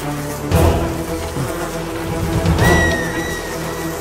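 Film background score with sustained notes, broken by two heavy impact hits, one about half a second in and one near three seconds, during a stick fight. A thin high ringing tone follows the second hit.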